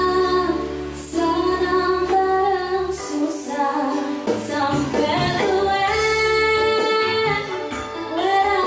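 A woman singing a Javanese pop song into a microphone, backed by a band with keyboard. The bass thins out about three seconds in, and she holds a long note near the end.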